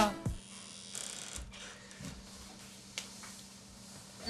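A rap track cuts off right at the start, leaving quiet small-room tone with a steady low electrical hum, faint handling noises and a single short click about three seconds in.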